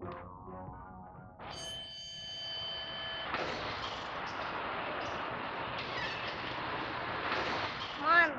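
Music fades out, then a ringing tone with several overtones comes in about a second and a half in. About two seconds later it gives way to a steady rushing hiss, a film sound effect for the glowing, neon-ringed cylinder that appears on screen.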